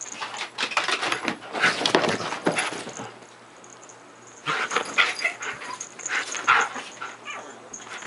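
Siberian husky vocalizing in play, short bursts of noise in two bouts with a quieter lull of about a second and a half in the middle.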